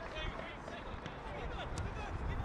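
Live pitch-side sound of an outdoor football match: faint distant players' shouts over open-air field noise, with one sharp thud, like a ball being kicked, near the end.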